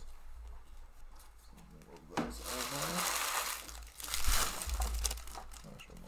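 Trading cards and their wrappers rustling and crinkling as they are handled on a table, in two louder stretches of scraping, crinkly noise.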